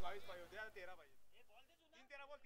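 Faint voice with a wavering pitch, fading to near silence within the first second; a little more faint voice comes near the end.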